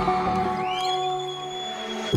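Live pop-band music with the drums dropped out: a sustained chord rings on, and about half a second in a high tone rises and then holds.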